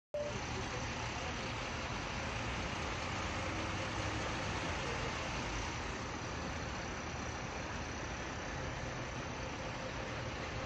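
Lorry engines running, a steady low sound with an even hiss over it and no sharp changes.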